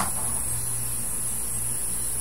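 Steady electrical hum with constant hiss and a faint high whine: background noise of the recording, with no other sound event.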